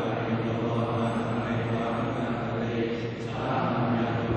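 Theravada monastic chanting in Pali, held on one steady monotone pitch, with a brief dip about three seconds in.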